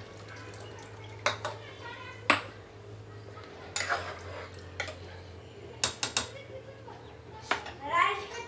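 A metal spoon stirring in a stainless-steel cooking pot, clinking sharply against the pot about seven times, at uneven intervals.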